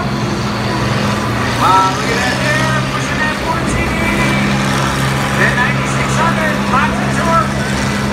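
Diesel engines of several combine harvesters running at a steady speed, a continuous low hum, with crowd voices over them.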